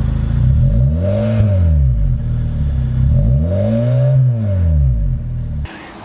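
Honda Fit with a Kakimoto Racing aftermarket exhaust, twin blue-titanium tips, running near idle and blipped twice, the exhaust note rising and falling with each rev. It cuts off suddenly near the end.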